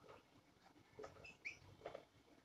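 Faint squeaks and scratches of a marker writing on a whiteboard: a few short pen strokes, with brief high squeaks around the middle.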